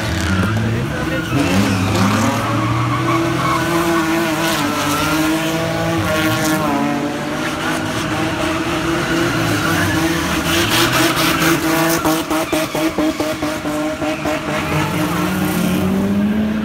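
Race car engines revving hard on a street circuit, the pitch rising and falling as they work through the gears. From about ten seconds in there is a stretch of rapid crackling.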